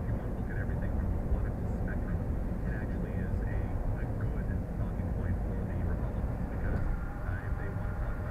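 Steady low road and engine rumble inside a car cruising at highway speed, with faint high wavering sounds over it.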